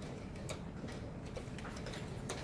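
Irregular sharp clicks from chess pieces being set down and chess clocks being pressed in many blitz games around the hall, over a steady low room rumble.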